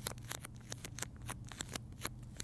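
Close-up handling noise from fingers working small objects: irregular, quick, sharp clicks and snips, several a second.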